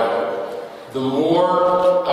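Speech only: a man talking, with a long drawn-out vowel in the second half.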